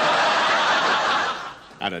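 Studio audience laughing at a sitcom punchline: a loud wash of many people's laughter that fades away about a second and a half in.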